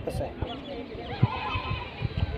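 Wind buffeting the microphone in irregular low gusts, with faint distant voices.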